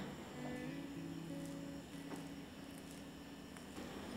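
Faint background music of soft, sustained low notes that change pitch every second or so.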